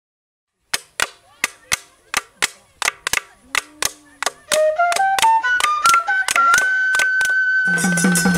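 Music opening with a short silence, then sharp percussive clicks about three a second that gradually quicken. About halfway through, a wind instrument climbs note by note to a high held note. Near the end, drums and a fuller folk ensemble come in under it.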